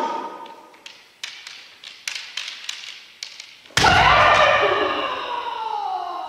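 Kendo practice: a shouted kiai fades out, then a run of light sharp taps, and about four seconds in a loud impact as a bamboo shinai strike lands with a stamping foot on the wooden floor, followed at once by a long kiai shout that falls in pitch. The strike is a debana-kote, a cut to the wrist made just as the opponent starts to attack.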